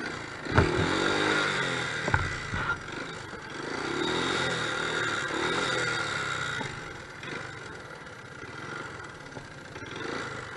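Dirt bike engine revving up and down while riding over snow, then easing off to a lower, quieter run in the last few seconds. Two sharp knocks come in the first few seconds.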